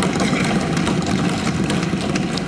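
Assembly members thumping their desks in approval of an announcement: a dense, steady clatter of many overlapping knocks over a low rumble.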